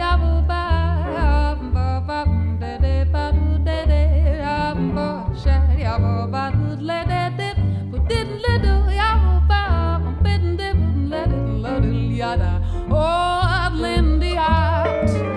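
Live jazz band music: a woman singing a melodic line with vibrato, over an archtop acoustic guitar and bass notes falling steadily about twice a second.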